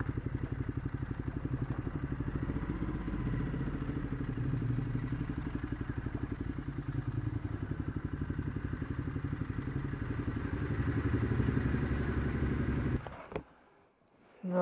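Ducati Multistrada 1200's L-twin engine running at low speed with an even, pulsing beat as the bike rolls slowly in, then switched off about a second before the end, followed by a brief click.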